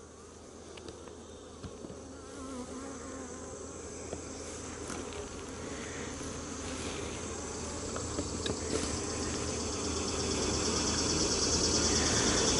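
Honeybees buzzing, the buzz growing steadily louder as the hive is opened and a brood frame is pried up, with a few faint clicks of the hive tool on the wooden frames.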